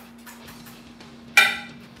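Light handling of food on a cutting board, then a single sharp clink from a kitchen utensil about a second and a half in, ringing briefly as it dies away.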